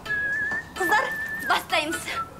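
Whistling: one long, slightly wavering note held for about a second and a half, with a woman's voice speaking briefly over it and after it.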